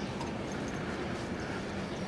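Walking footsteps on a paved park path, light regular steps over a steady hum of outdoor background noise.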